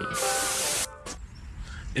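A burst of steady hiss that cuts off suddenly just under a second in, then a faint low rumble.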